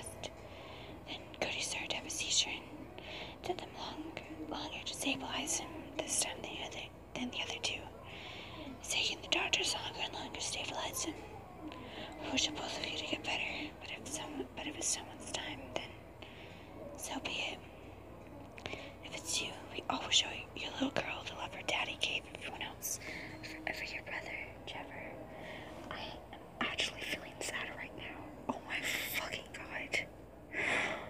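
A person whispering in short phrases with brief pauses between them.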